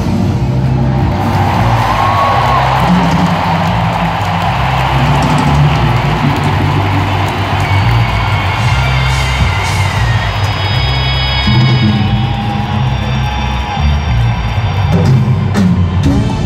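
Live band with drum kit, congas and electric guitar playing loud through an arena sound system, heavy in the bass, as heard from the audience. A crowd cheers over the music, most plainly in the first few seconds.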